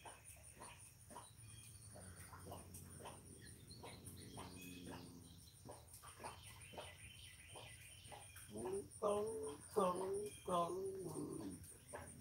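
A cat making a run of short, pitched calls that bend up and down, cooing-like, loudest over the last few seconds after a few faint calls earlier. The calls are unusual, a noise the keeper has never heard this cat make before.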